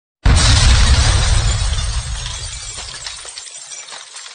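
Intro sound effect: a sudden loud crash like breaking glass that starts a moment in and fades away over about four seconds, with a crackling tail.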